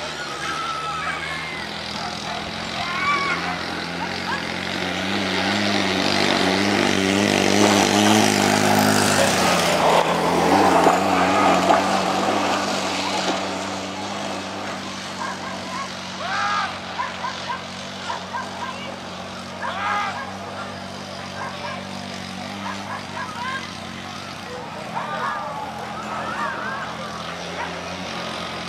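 Steady motor hum of a dog-racing lure machine, swelling to its loudest about ten seconds in as the lure and whippets run past, then easing off. Spectators shout and call out in the second half.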